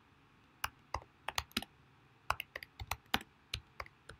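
Keystrokes on a computer keyboard as a word is typed: about a dozen short, quiet key clicks at an uneven pace.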